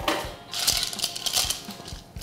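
An iced matcha latte sipped through a straw: a crackly slurping rattle of liquid and ice in the glass, starting about half a second in and lasting about a second and a half.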